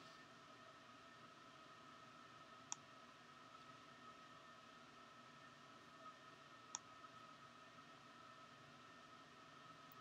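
Near silence: faint room tone with a steady hum, broken by two single computer mouse clicks, one a little under three seconds in and another about four seconds later.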